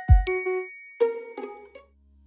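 Chiming logo-intro jingle: a ringing ding over a low thud, then three quicker ringing notes that fade out shortly before the end.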